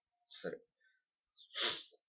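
A person sneezing: a brief voiced sound, then a loud short burst of hissing breath about a second and a half in.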